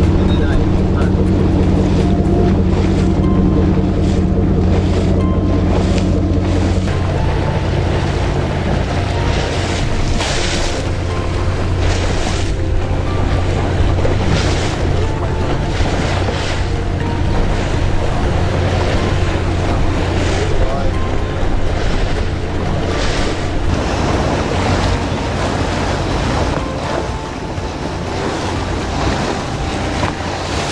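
A motorboat under way: its engine hums steadily while water rushes and splashes along the hull and wind buffets the microphone. The engine hum eases a little about seven seconds in.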